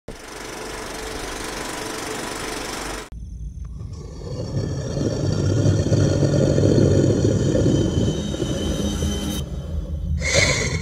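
Horror-film sound design: an even hiss for about three seconds that cuts off suddenly, then a low rumbling drone that swells over a couple of seconds and holds.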